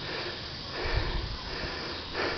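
A person breathing close to the microphone, with one audible breath about a second in, over a low rumble of wind or handling on the microphone.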